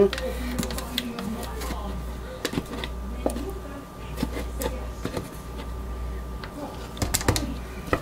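Scattered light clicks and taps of a plastic pitcher and spatula against a paper-lined soap mold as thick soap batter is poured in, with a cluster of taps near the end, over a steady low hum.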